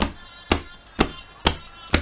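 Evenly spaced knocks, about two a second, as a man beats time by hand to the song he is singing along to.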